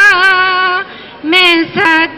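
A woman singing a Punjabi folk wedding song through a microphone, holding a long wavering note, breaking off for a breath about a second in, then starting the next phrase.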